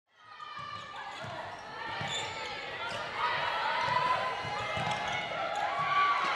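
Live netball court sound: repeated thuds of the ball and players' feet on the sports-hall floor, with players' voices calling out.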